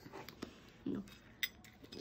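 A few light clicks and clinks of snack pieces and fingers against a plate, the clearest about a second and a half in, with a short spoken word just before it.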